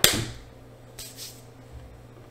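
A single sharp knock at the very start, the loudest thing here, ringing briefly before dying away, followed by fainter brushing sounds about a second in.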